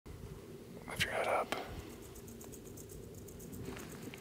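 A man whispering briefly about a second in, a hushed remark over a low steady background.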